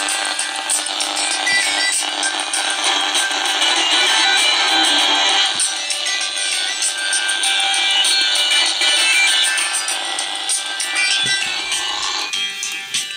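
Music played on a mobile phone, picked up by the electret microphone of a homemade walnut-shell radio transmitter and heard through a portable medium-wave radio receiver. It sounds thin and tinny with no bass, over a steady hiss.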